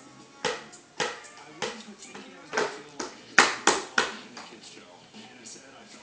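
Hands tapping and slapping on a child's plastic ride-on toy: about nine short, sharp knocks at irregular intervals, the loudest about halfway through.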